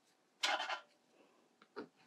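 Two brief scrapes of a card's edge dragged through wet watercolour paint on paper: one about half a second in, a shorter one near the end.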